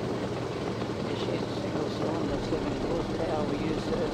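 Ford Model T's four-cylinder side-valve engine running steadily as the car drives along at low speed, an even low drone.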